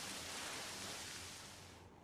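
Hiss of water spraying from an activated fixed-temperature release as the pilot line's water pressure vents. The hiss fades and cuts off sharply just before the end.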